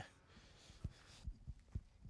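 Near silence with a few faint low thumps from a handheld microphone being carried as its holder walks.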